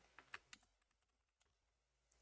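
Near silence, with three faint computer keyboard keystrokes in the first half-second.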